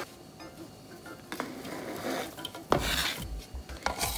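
Chopped broccoli slid off a plastic cutting board into a plastic mixing bowl of pasta, with faint rustling. A sharp knock comes near the end, then scraping and rubbing against the bowl as a spoon goes in to start mixing.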